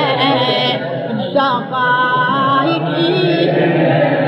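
A man's unaccompanied voice chanting a Shia lament (na'i) in long, wavering melismatic lines, with a brief break for breath about a second and a half in.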